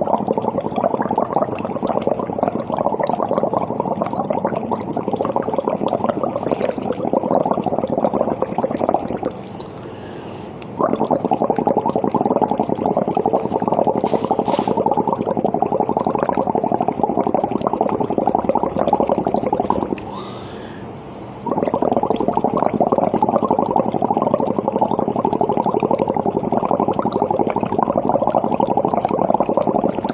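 Breath blown through a straw into limewater (calcium hydroxide tinted with phenolphthalein) in a conical flask, bubbling steadily in three long bouts with two short breaks, about 9 and 20 seconds in. The bubbling passes the breath's carbon dioxide through the limewater as a test for it.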